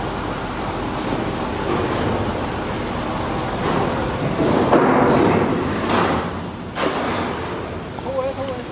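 Steady background noise with several short knocks and bumps around a car's open rear door, the loudest about five to seven seconds in.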